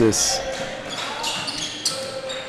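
Live basketball in a gym: a ball bouncing on the hardwood court, with short squeaks from the players' shoes.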